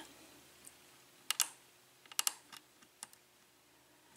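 Small metallic clicks of a hook pick working the pin stack inside a five-pin ISEO lock cylinder held under a tension wrench: a pair of clicks just over a second in, a quick cluster a little after two seconds, then a couple of faint ticks. The pick is probing for pin 1, which is giving feedback but has not set.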